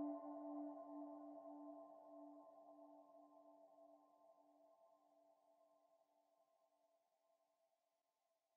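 The ringing tone of a singing bowl dying away, its low note pulsing slowly with a few higher overtones above it, and fading out about four seconds in.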